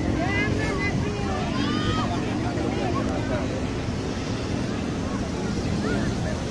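Scattered shouts from players and spectators at a youth football match, loudest in the first couple of seconds, over a steady rumble of wind on the microphone.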